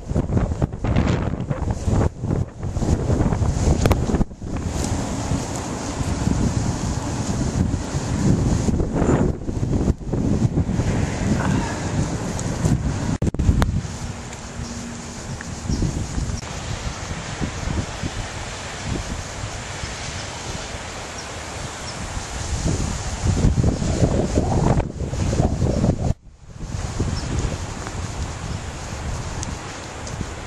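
Wind gusting across the microphone: a rough, rumbling rush that comes and goes. The gusts are strongest in the first half and again a little before a sudden brief drop about 26 seconds in.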